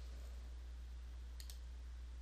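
Two light computer mouse clicks in quick succession about halfway through, over a steady low hum and faint hiss.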